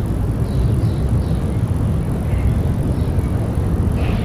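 Opening of a bass-boosted dubstep track: a dense, steady, heavy low rumbling noise with a faint thin high whine above it.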